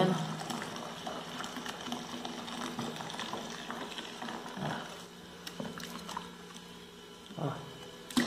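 Thick, foamy homemade liquid soap poured from a plastic mug back into a plastic bucket of the same mixture, over a steady low hum.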